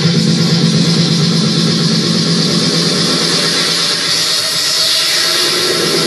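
A DJ mix of dance music playing loud and without a break. Over the second half the bass thins out and a hissing sweep swells in the upper range, like a filter build-up at a transition.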